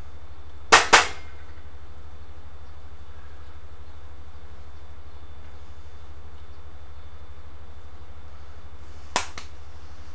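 Two sharp plastic clicks close together about a second in, and a single lighter click near the end: the flip-top cap of a plastic spice jar of chili powder being snapped, over a steady low hum.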